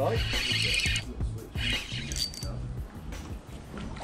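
Background music with sustained low notes, and a brief noisy hiss in the first second.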